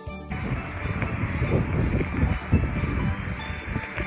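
Background music under outdoor live sound, mostly wind rumbling and buffeting on the microphone, which comes in suddenly about a third of a second in.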